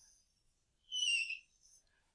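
A stylus drawing a loop on a tablet screen, giving one brief, high-pitched squeak about a second in.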